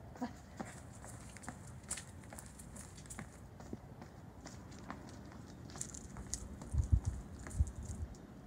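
Sneakers tapping and scuffing on a concrete sidewalk in quick side-to-side steps, two feet landing in each chalked square. Two heavier low thumps come near the end.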